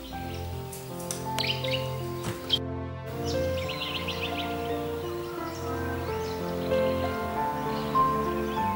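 Background music, a slow piece with sustained notes, with small birds chirping in short quick clusters about a second and a half in and again about four seconds in.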